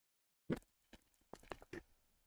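Headset with a boom microphone being handled and pulled on, picked up by its own mic: a sharp click about half a second in, then a few softer clicks and rustles.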